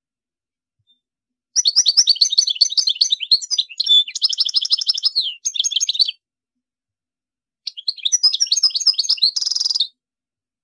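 European goldfinch singing: two fast twittering phrases of rapid chirps and liquid trills, separated by a short pause, the second ending in a brief buzzy, nasal note.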